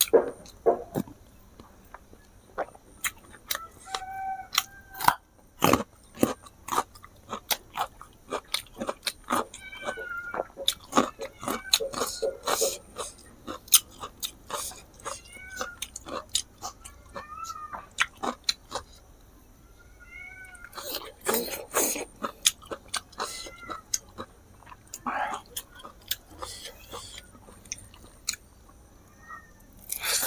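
Close-miked, wet chewing and lip-smacking of rice and meat curry eaten by hand, a dense run of sharp mouth clicks. A few brief high squeaky sounds come in among them.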